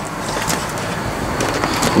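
A John Deere 4052R tractor's diesel engine running steadily, with a few sharp clicks and knocks from handling as the camera moves through the cab.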